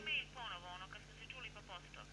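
Faint voice of the person at the other end of a phone call, thin and narrow-banded as heard through the handset earpiece, talking in short phrases.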